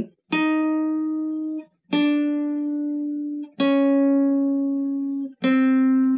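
Acoustic guitar playing a slow finger exercise on the G string, frets 8, 7, 6 and 5, one finger per fret. There are four single plucked notes, each a semitone lower than the last. Each rings for about a second and a half and is cut short before the next.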